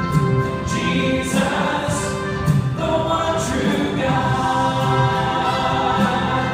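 Church choir and worship singers singing a contemporary worship song with the band, in long held notes.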